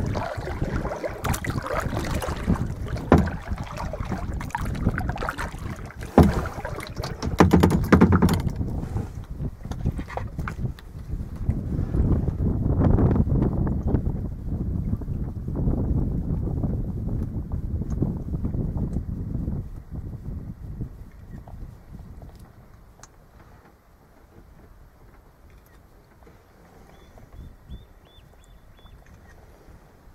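Wind buffeting the microphone over water lapping and splashing against a kayak's hull, with several sharp knocks in the first eight seconds. After about twenty seconds it dies down to faint lapping.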